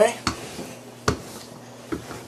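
Two light knocks of things being handled and set down on a kitchen countertop, about a second apart.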